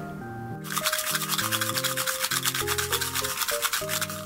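Handmade resin heart shaker charms shaken by hand, the loose glitter filling sealed inside rattling in a rapid, steady shaka-shaka that starts about half a second in, over soft background music.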